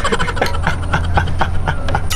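A man drinking from a plastic water bottle: a quick run of short clicks and crinkles, about six a second, over a steady low rumble.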